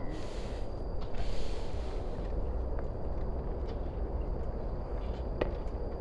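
Outdoor background noise: a steady low rumble with two brief hissy swells in the first two seconds and a single sharp knock about five and a half seconds in.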